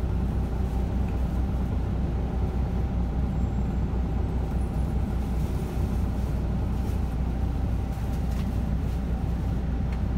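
Steady low rumble of a moving road vehicle, heard from inside its cabin.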